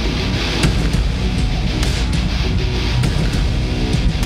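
Trailer soundtrack music with guitar, dense and steady, with a strong low end.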